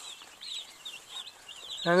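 A flock of Cornish cross broiler chicks peeping: a busy, unbroken stream of short high peeps from many birds at once.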